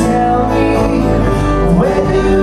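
Three guitars, two acoustic and one electric, playing a song live, with chords held steadily and no break.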